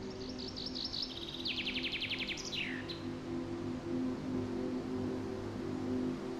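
A songbird sings a quick phrase of rapidly repeated high notes that ends in a falling note, over about the first half. Soft background music with sustained low chords runs underneath.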